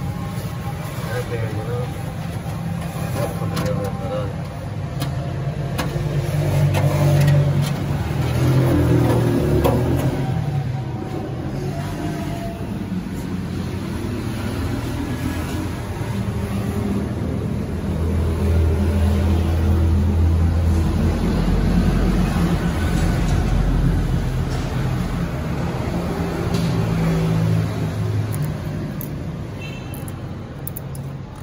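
An engine running with a low rumble that swells and eases, louder about a third of the way in and again past the middle, with indistinct voices in the background.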